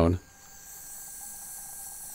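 Magnesium metal fizzing in hydrochloric acid: a steady, faint hiss of hydrogen bubbles as the metal dissolves.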